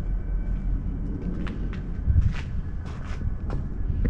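Footsteps on gravelly dirt, a run of short crunching steps from about a second in, over a steady low rumble.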